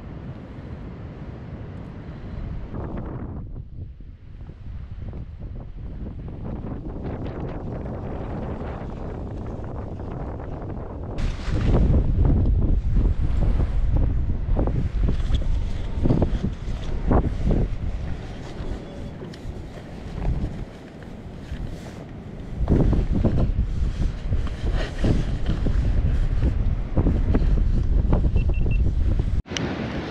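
Strong wind buffeting the microphone, rumbling and gusting. It grows much louder about a third of the way in, eases briefly, then gusts hard again for most of the second half.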